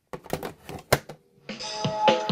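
A run of clicks and clunks as an 8-track cartridge is pushed into the slot of a portable Panasonic 8-track player, the loudest near the one-second mark. After a brief pause, about a second and a half in, music starts playing from the cartridge.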